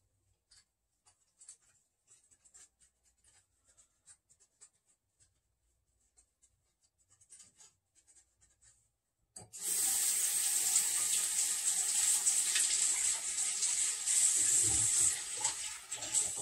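Kitchen tap turned on a little past halfway: a steady rush of running water into the sink. Before it there are only faint scattered clicks and knocks.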